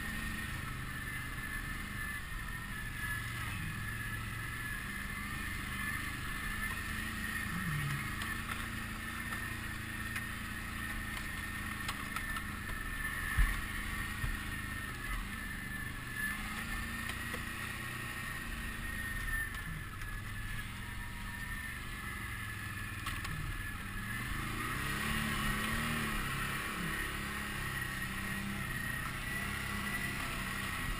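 Can-Am Outlander 650 ATV's V-twin engine running at low trail speed with a steady high whine, picking up revs for a couple of seconds near the end. There is one sharp knock about halfway through.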